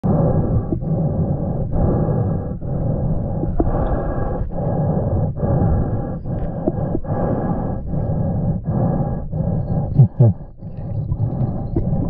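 Muffled underwater noise heard through a camera housing, pulsing with short dips about once a second, with a few brief low sounds near the end.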